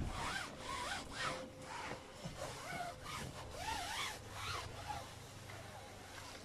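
A damp cloth rubbed back and forth over vinyl tent-trailer ceiling fabric in repeated strokes, with short squeaks that rise and fall. The fabric is being washed down to wipe off mildew remover.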